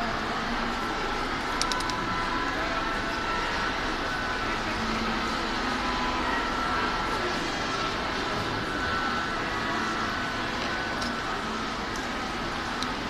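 Steady background hubbub of a large hall: indistinct distant voices over a constant rush of noise, with a few small clicks about two seconds in.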